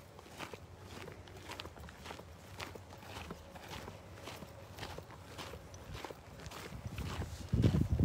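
Footsteps of a person walking on a gravel and dirt path at about two steps a second. A loud low rumble comes in near the end.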